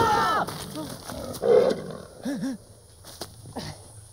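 A big cat's roar, loudest about a second and a half in, after a brief startled shout at the very start.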